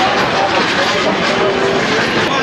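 Busy street ambience: a steady wash of noise with scattered background voices of passers-by.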